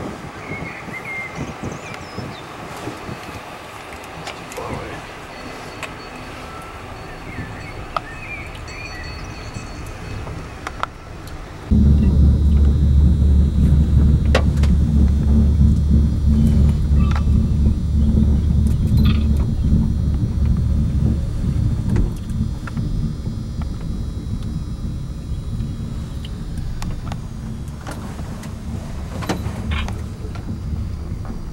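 Steady low hum inside a moving cable-car gondola cabin. It cuts in abruptly about twelve seconds in and stays loud to the end. Before it there is quieter open-air sound with a few faint high chirps.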